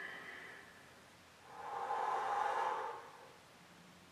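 A man breathing audibly while holding a standing plank: a faint breath near the start, then a longer exhale about one and a half seconds in that lasts about a second and a half.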